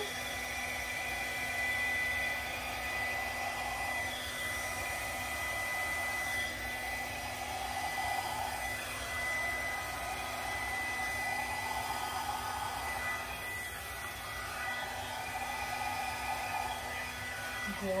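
Handheld electric blow dryer running steadily, with a constant high whine over its airflow, which swells and fades slightly as it is moved over wet acrylic paint to blow it across a canvas.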